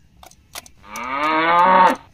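A single recorded cow moo, about a second long, starting a little before the middle and ending abruptly near the end. A few faint clicks come before it.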